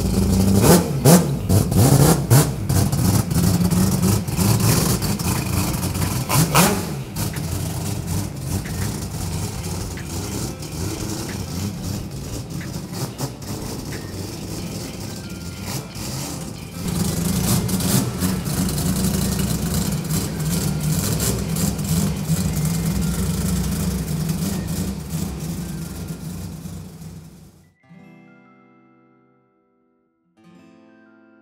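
Mazda 26B four-rotor rotary engine of a drift-built RX-7 revving in rises and falls over the first several seconds, then running on and revving again through the second half before fading out near the end. Music plays with it.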